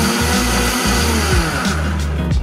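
Vitamix countertop blender motor running loud and fast as it blends a drink. Its pitch falls and the whir stops near the end as it is switched off, over background music.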